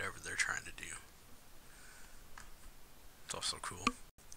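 Speech: soft Japanese dialogue from the anime episode, a short phrase near the start and another near the end.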